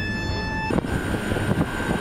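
Low rumbling wind and engine noise of a warship under way at sea, with wind buffeting the microphone. A steady held drone sounds over it at first and cuts off under a second in.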